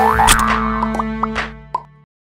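Short cartoon-style outro jingle: music with a rising slide at the start and a few quick sound-effect hits, fading near the end.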